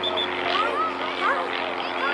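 Several voices of players and spectators calling out at once during a soccer game, over a steady low mechanical hum.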